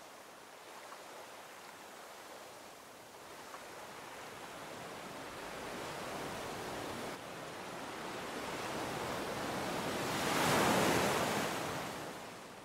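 Ocean surf: a steady wash of waves that builds slowly and peaks in one louder breaking wave near the end.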